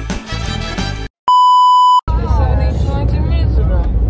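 Background music that stops about a second in, followed by a single loud, steady electronic bleep lasting under a second, the kind edited in to censor a word. Then voices talking over the low rumble of a moving bus.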